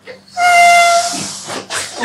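Air squealing through the neck of a party balloon as it is blown up: one steady high whine of under a second over a rush of air, followed by a breathy rush.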